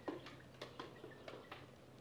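Near quiet, with about half a dozen faint, irregular clicks and ticks.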